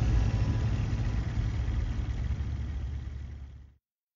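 A low rumble at the tail of the outro music, fading and then cutting off to silence a little before the end.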